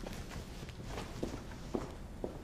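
Footsteps walking away across a concrete floor, about two steps a second.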